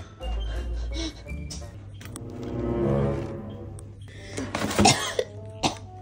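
A person coughing from the smoke of burnt microwave popcorn, loudest about three-quarters of the way through, with background music playing.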